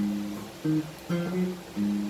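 Guitar strumming four chords, one about every half second, each let ring briefly.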